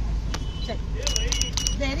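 Steady low street rumble, with a quick run of about five light metallic clinks about a second in.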